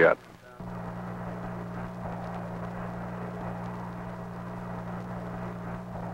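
Steady radio hiss with a low electrical hum from an open air-to-ground channel, starting about half a second in and cutting off near the end. It carries no reply: the radio check to the spacecraft is still unanswered.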